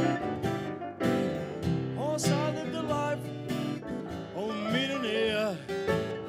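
A blues intro played live on steel-string acoustic guitar and grand piano. A bending, wavering lead melody comes in over them about two seconds in, and again from about four and a half seconds.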